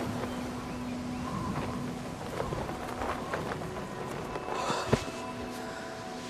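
Quiet film ambience: a low, even background noise with a single sharp knock about five seconds in, and soft music beginning to come in near the end.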